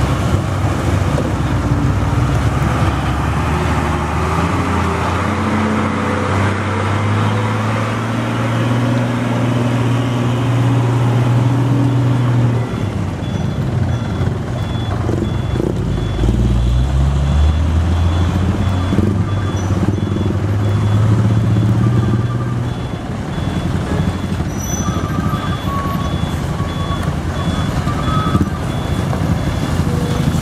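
Heavily loaded Mitsubishi diesel trucks labouring slowly over a broken, pothole-filled road. The first engine's note climbs as it pulls, then drops away. About halfway through, a second truck's engine comes in low and climbs as it pulls through.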